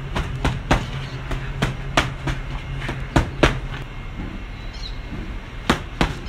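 Boxing gloves striking leather focus mitts: sharp slaps in quick combinations of two and three through the first half, a pause, then one more strike near the end. A steady low hum runs underneath for the first half.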